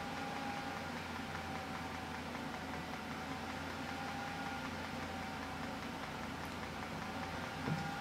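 Steady low background hum of room tone with a faint thin steady whine; no distinct sounds.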